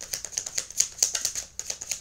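A tarot deck being shuffled by hand: a rapid run of crisp card clicks and snaps.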